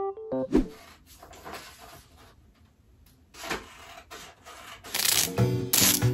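A few seconds of soft rustling and scraping, then two loud, hissing rips near the end: packing tape being pulled off its roll across a cardboard box. Electric piano music ends just at the start, and new music comes in with the rips.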